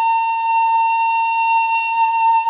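Music: one long high note held steadily on a flute-like wind instrument.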